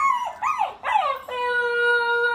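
Husky puppy howling: a few short rising-and-falling yelps, then, just over a second in, a long howl held on one steady pitch.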